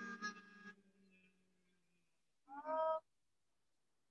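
A man's low, steady hum of bee breathing (bhramari pranayama) trailing off faint over the first two seconds, then a brief half-second voiced sound near the three-second mark, then silence.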